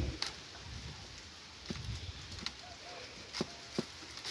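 Scattered light clicks and creaks of woven basket strands being worked with a wooden pick while the rim stitches of a handmade balaio are tightened, over a low wind rumble on the microphone.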